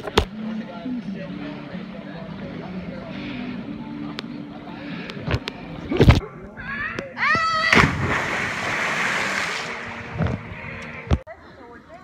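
A man yells during a jump from a tree, followed by about two seconds of rushing, splashing water. Scattered knocks from the camera being handled come before it.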